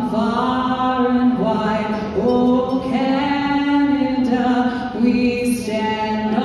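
A woman's solo voice singing a national anthem into a handheld microphone, amplified through the arena's sound system, holding long sustained notes one after another.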